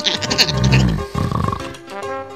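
Cartoon snoring sound effect, one low rumbling snore about half a second in, over background music.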